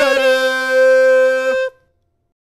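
A single loud, held, horn-like musical note, perfectly steady in pitch, used as a dramatic standoff sting; it cuts off about a second and a half in.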